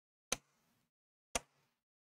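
Two sharp plastic clicks about a second apart as the InWin B1 Mesh mini-ITX case's pop-off top is pressed down into place.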